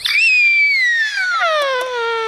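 A young girl's long, drawn-out wail that starts as a very high squeal and slides steadily down in pitch without a break.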